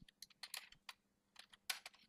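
Faint, irregular clicks of computer keys being tapped, about eight in two seconds.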